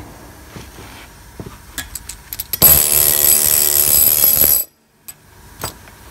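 Light metallic clicks and taps, then a loud two-second burst of workshop machine noise with a high steady whine, starting a little over two and a half seconds in and cutting off abruptly.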